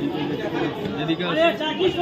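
Chatter of a dense crowd, many voices talking over one another.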